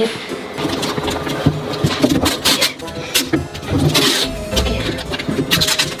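Plastic knocking and rustling as hands handle a blue plastic funnel and a plastic cola bottle, a string of short irregular clicks and scrapes, heavier around the middle.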